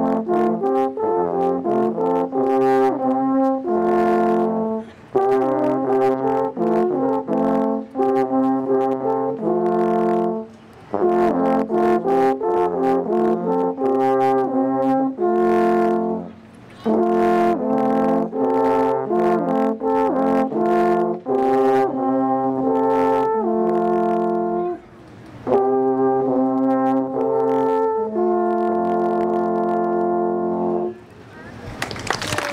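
Three alphorns playing a tune together in harmony, long sustained notes in phrases with short pauses between them. The phrase near the end closes on a long held chord.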